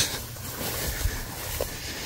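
Faint, irregular low rumble of wind buffeting the phone's microphone, with no clear event in it.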